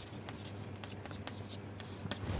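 Faint chalk on a chalkboard: a run of short scratches and taps as an equation is written.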